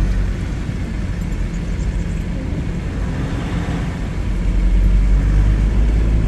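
Steady low rumble of a vehicle travelling along a highway, heard from inside the cabin, growing a little louder near the end.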